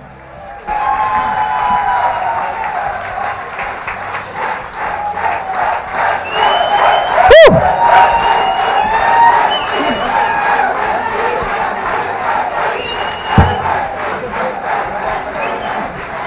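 Audience cheering and applauding: steady clapping under many overlapping shouts, with one loud shout about halfway through.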